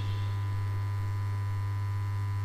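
A steady low electronic hum with a faint high steady tone above it, unchanging in pitch and level.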